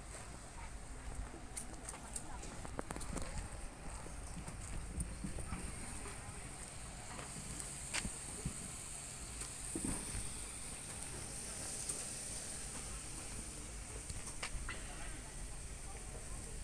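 Outdoor ambience: low wind rumble on the microphone with faint background voices, and a few sharp clicks from the phone being handled.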